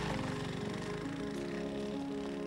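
Background music: a few sustained notes held and changing slowly.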